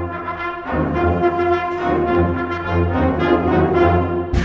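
Concert band playing a march, the brass in front: held brass chords come in right after a brief break, and the low parts fill in about two-thirds of a second later.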